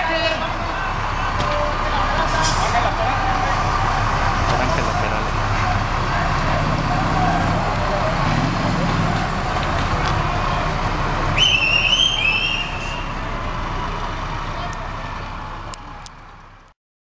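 Street crowd chatter over idling and moving emergency-vehicle engines, police trucks and an ambulance among them. About eleven seconds in, a short high wavering whistle-like tone sounds for a second or so. The sound fades down near the end.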